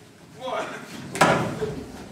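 A single sharp thump about a second in, with a short trail of hall echo, between brief voices.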